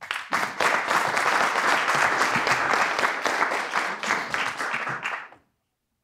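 Audience applauding, a steady patter of many hands clapping that tapers off and stops about five seconds in.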